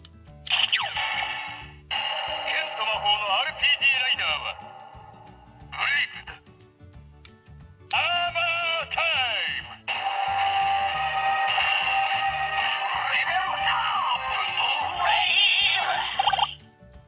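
A Bandai Kamen Rider Zi-O GP Ride Watch toy playing its electronic sounds through its tiny built-in speaker: recorded voice calls and jingle music in several bursts, with a long one running from about ten seconds in. The sound is thin and tinny, with no bass.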